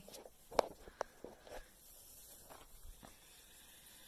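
A cat pouncing and batting at a wand toy on carpet: soft rustles and thumps, with two sharper taps about half a second and a second in.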